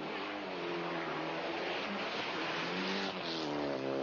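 Rally car engine revving hard as the car is driven flat out, its note dropping and then climbing again near the end, with a rush of noise through the middle.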